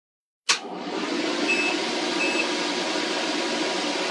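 Eagle Eye LB-48-150 battery load bank being switched on. A sharp click about half a second in, then its cooling fans start and run with a steady rushing noise. Two short high beeps come from the unit about a second and a half in and again just after two seconds.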